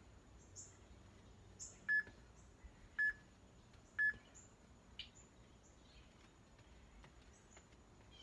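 Three short identical electronic beeps about a second apart, a workout interval timer counting down the end of an exercise interval. Faint bird chirps in the background.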